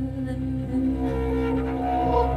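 Slow jazz ballad played by a cello and a voice run through effects pedals: long, held, drone-like tones, with a new higher note entering about a second in.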